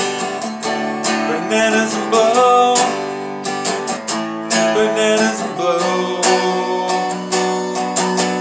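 Hollow-body archtop guitar strummed in a steady rhythm, playing chords with frequent strokes and no singing over it.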